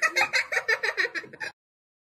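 A quick run of high-pitched giggling, about seven short bursts a second, that cuts off abruptly about one and a half seconds in.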